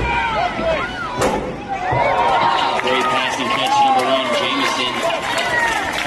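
Football crowd shouting and cheering during a play, many voices overlapping, with a single sharp crack about a second in.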